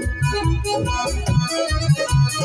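Live band music: an electronic keyboard plays a melody over a quick, steady beat on hand drums.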